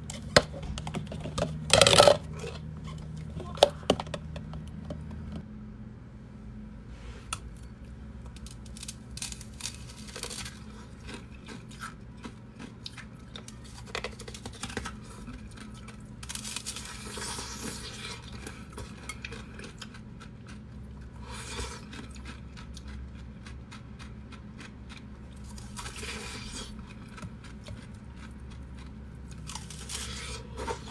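Blocks of coloured ice being handled and bitten. A few sharp clacks and one brief loud burst come in the first four seconds. A long run of crisp crackles and crunches follows, bunching up in a few denser spells.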